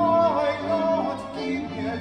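A male singer performing a Baroque aria, his voice holding notes with vibrato over an accompaniment of violins and cello.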